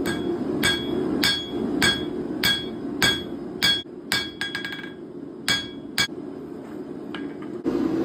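Rounding hammer striking a red-hot 3/16 by 3/4 inch steel flat bar on an anvil to smooth a forged leaf. There are about seven evenly paced blows, roughly one every 0.6 seconds, each with a short ring from the anvil, then a few more spaced-out strikes.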